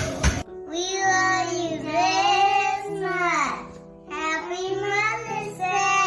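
Rapid tapping that cuts off about half a second in, then a child's voice singing two long phrases over held backing chords.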